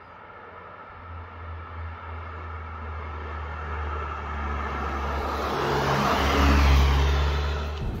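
A Cupra Ateca with its turbocharged 2.0 TSI four-cylinder engine driving toward the microphone and passing close by. Engine and tyre noise build steadily, loudest about six and a half seconds in.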